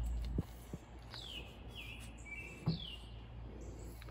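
A songbird singing: clear whistled notes that slide downward, repeated about once a second, one drawn out into a short held whistle. Under it there is a faint low hum and a couple of light knocks.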